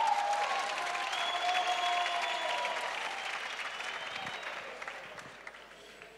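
Congregation applauding, starting sharply and dying away over several seconds.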